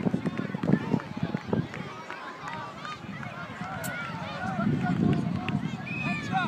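Many young children shouting and calling out at once during a mini rugby match in play, their voices overlapping with no clear words, with a louder patch of voices about two-thirds of the way through.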